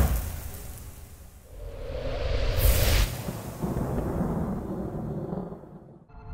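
Logo-sting sound effects: a deep booming impact dies away, then a rising whoosh builds into a second booming hit about three seconds in, which slowly fades out.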